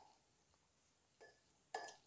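A steel spoon clinking against a glass mixing bowl while stirring paneer cubes in a spice marinade: a faint clink about a second in, then a louder clink with a short ring near the end, the rest near silence.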